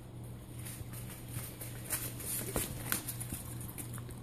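Italian greyhound walking in dog boots on a hard floor: an irregular patter of soft footfalls, over a steady low hum.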